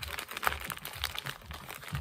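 Thin paper bag crinkling and rustling in the hands as it is squeezed to feel the yarn and something solid inside. A faint low thumping repeats about twice a second underneath.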